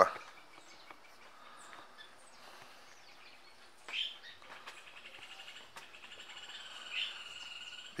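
Faint bird chirps over quiet outdoor background: a short call about halfway through and a longer, wavering call near the end.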